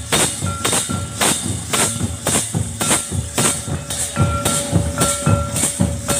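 Santali folk dance drums played live, beating a steady rhythm of about two strokes a second with a bright jingling clash on each beat. A faint held tone runs under the drumming, and a higher one sounds in short stretches.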